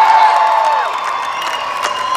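Concert audience cheering and whooping, with some clapping. One long high whoop is held and then tails off about a second in.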